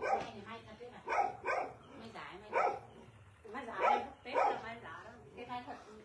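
A dog barking several times in short, separate barks.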